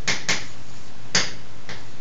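Chalk writing on a blackboard: four sharp taps of the chalk striking the board, the loudest a little over a second in.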